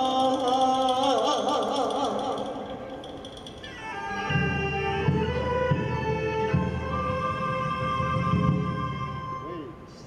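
Male vocalist singing with vibrato over a Chinese traditional orchestra, his phrase ending about three seconds in. Then an instrumental passage: bamboo flutes (dizi) hold long notes over a low accompaniment from about four seconds on, fading near the end.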